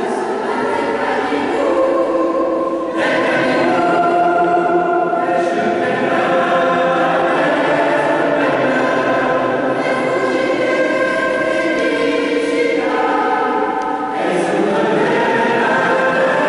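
Mixed choir singing sustained chords, with a new phrase starting about three seconds in and another near the end.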